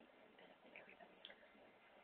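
Near silence: faint room tone that starts abruptly, with a few soft ticks.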